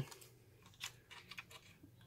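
A few faint clicks and taps from fingers handling a plastic fire alarm horn-strobe and its circuit board. The clearest click comes a little under a second in, followed by several tiny taps.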